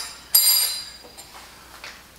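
Metal spoon clinking twice, about a third of a second apart, the second clink ringing on for most of a second.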